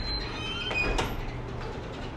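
A glass entrance door swinging on its closer, with a thin squeal and a sharp click about a second in, over a steady low hum.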